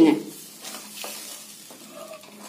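Wooden spatula stirring seasoned water in a nonstick pan: a soft, faint swishing with a few light ticks and scrapes as the water heats toward the boil.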